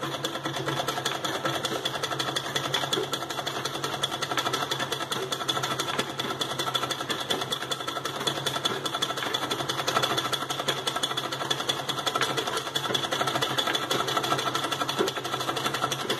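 A sewing machine running steadily at speed, its needle stitching rapidly and evenly through fabric held taut in an embroidery hoop. This is free-motion machine embroidery, forming small looping round stitches.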